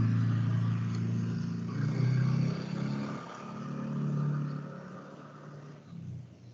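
A low vehicle engine hum, swelling about two seconds in and again about four seconds in, then fading near the end.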